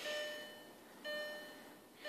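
2004 Volkswagen Jetta's warning chime dinging about once a second with the driver's door open. Each ding is a bright multi-tone note that dies away.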